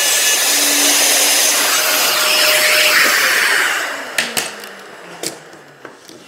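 Festool plunge router running loudly, then switched off about three and a half seconds in and spinning down. A few clicks follow as it winds down.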